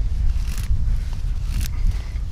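Scandi-ground bushcraft knife shaving long curls off a wooden stick to make a featherstick: two short rasping scrapes about a second apart, over a steady low rumble.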